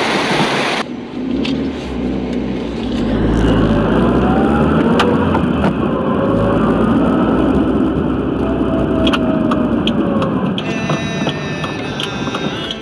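Water rushing cuts off abruptly about a second in and gives way to a motor vehicle's engine running with a deep rumble, its pitch gliding up and down. Near the end a higher sound of several held tones starts.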